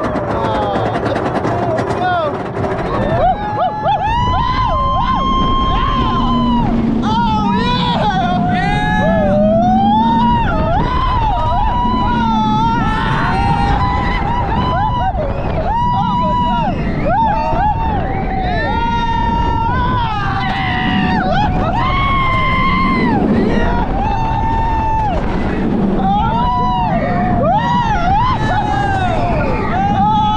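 Roller coaster riders screaming and yelling in long, high, wavering calls, starting about three seconds in and carrying on throughout. Under them runs a steady rush of wind and the rumble of the train running on the Wicked Cyclone hybrid track.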